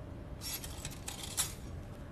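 Small metal surgical instruments clinking and rattling as they are handled, a quick cluster of light clicks lasting about a second with one sharper click near the end.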